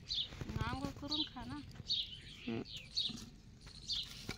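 Small birds chirping, short falling chirps about once a second, with a woman's voice speaking softly for about a second early on.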